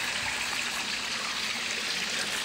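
Pump-fed koi pond water splashing and trickling steadily as it pours back into the pond.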